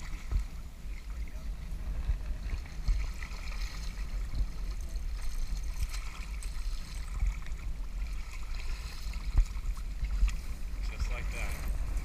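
Shallow river water splashing and running around wading legs as a fish is handled in the water, over a steady low rumble of wind on the microphone.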